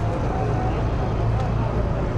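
Steady low rumble of vehicle engines and road traffic, with no break.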